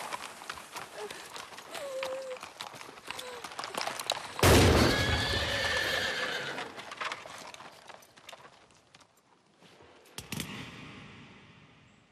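Hoofbeats clattering, then a loud horse whinny that starts suddenly about four and a half seconds in and fades away over the next few seconds.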